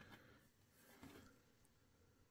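Near silence, with faint handling sounds of a plastic action figure and its cloth robe being fitted over it.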